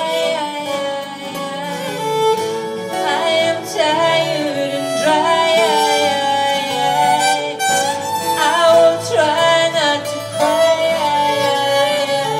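Acoustic folk band playing an instrumental break: a fiddle carries the melody, with sliding notes, over strummed acoustic guitars and double bass.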